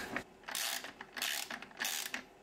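Parts being handled and fitted into a 3D-printed plastic enclosure: three short bursts of scraping and clicking, each well under half a second.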